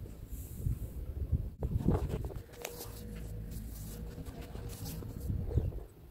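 Outdoor ambience: an uneven low rumble, as of wind on the microphone, with a few faint clicks and scuffs around the second second.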